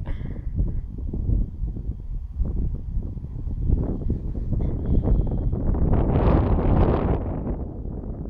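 Wind buffeting the microphone as a low rumble, with a louder rushing gust about six seconds in.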